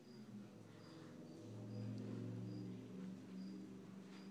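Faint, short high chirps spaced every half second to a second, over a low steady hum that grows louder in the middle.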